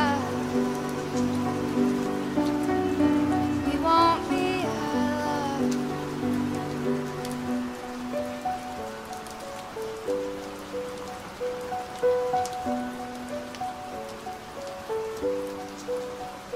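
Steady rain falling under a soft acoustic song. A sung note comes in about four seconds in. After that the accompaniment becomes a repeating pattern of short held notes.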